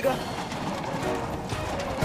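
A dense, steady rattling and rumbling sound effect of a house shaking, under background music.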